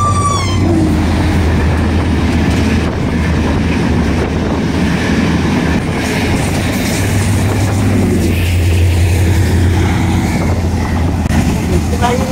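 Diesel passenger train running past close by along a station platform: a loud, steady rumble of engine and wheels on the rails, swelling again later on.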